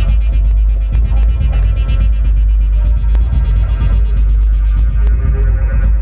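Eurorack modular synthesizer playing a deep, sustained bass drone with steady higher tones layered over it and sparse clicks scattered through it.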